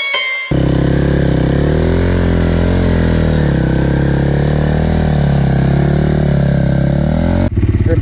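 KTM four-stroke dirt bike engine running under throttle, its pitch rising and falling as the rider opens and closes the throttle; it starts abruptly about half a second in after a plucked-guitar note and cuts off abruptly near the end.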